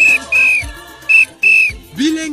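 A whistle blown four times in a short, long, short, long pattern, each blast a steady high note, over faint background music.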